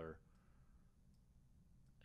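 Near silence, room tone with a couple of faint clicks of a computer mouse used to place markers on the screen.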